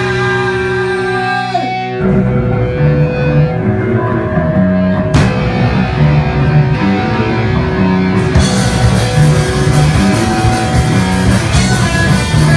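Live raw punk band playing: electric guitar rings out held chords with a note sliding down, then drums and distorted guitar crash in together about two seconds in and drive on at full tilt, the cymbals getting brighter about two-thirds of the way through.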